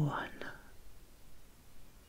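A woman's soft voice trailing off into a breathy whisper in the first moment, then faint room tone.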